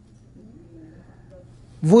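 A short pause in a man's talk, holding a faint steady low hum and a faint brief low murmur; his voice starts again near the end.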